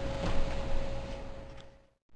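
Steady kitchen room noise with a faint constant hum, fading out to dead silence near the end at an edit cut.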